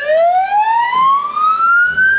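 Ambulance siren in a slow wail, its pitch climbing steadily in one long rise.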